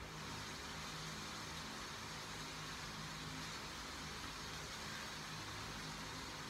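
Steady hiss with a faint low hum underneath, no music or speech: background room noise, of the kind an electric fan or air conditioner makes.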